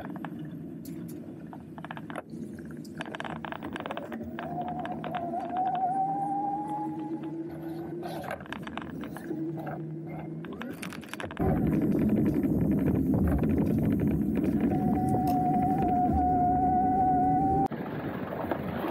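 Riding noise from an electric-assist bicycle: a motor whine that climbs a little in pitch as the bike picks up speed, over a low hum. About two-thirds of the way through, a much louder low rushing noise sets in with the whine still audible, and it cuts off abruptly near the end.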